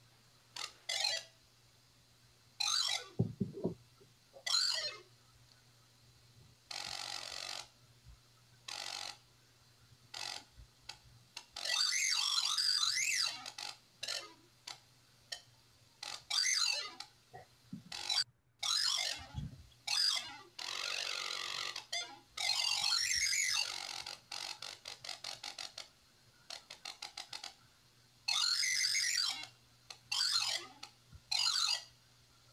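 Synthesized electronic sound from a furry robotic creature that turns touch on its conductive fur into sound, answering a hand petting and scratching it. Irregular bursts of tones and hiss start and stop with the touches, some with gliding pitch, some a second or two long.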